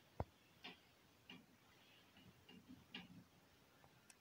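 Faint taps and short scratchy strokes of a marker writing on a whiteboard, a handful spread irregularly through, with one sharp click near the start as the loudest sound.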